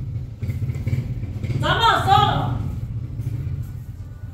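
A steady low motor drone, with a woman's voice speaking a short phrase about two seconds in.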